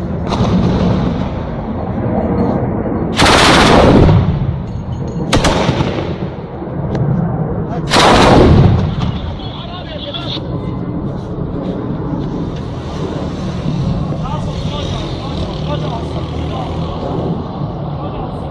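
Heavy automatic gunfire fired in long bursts: two loud bursts of about a second each, roughly four seconds apart, with a single sharp shot between them. In the second half the firing stops and steady background noise with voices remains.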